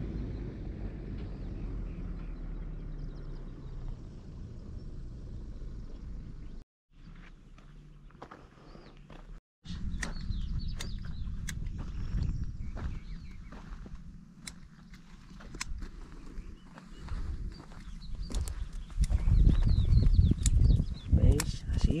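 Wind rumbling on the microphone, louder near the end, with faint bird chirps and scattered small clicks; the sound drops out twice briefly.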